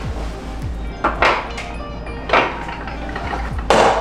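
Pistols clacking against the shelves and interior of a steel gun safe as one handgun is put away and another taken out: three sharp clacks, the last and loudest near the end. Background music with a deep bass beat runs underneath.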